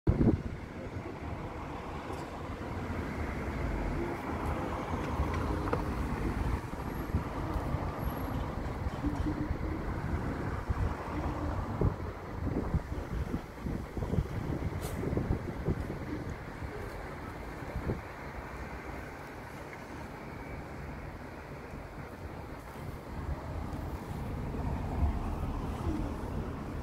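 Low, steady outdoor rumble with no clear single source, surging unevenly in the low end from about six to eighteen seconds in.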